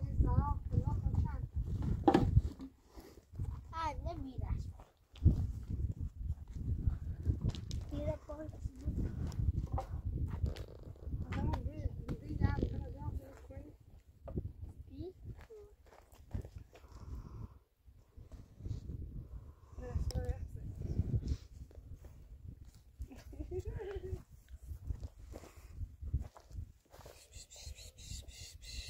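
A woman and a child talking in short exchanges, with scattered sharp knocks in between.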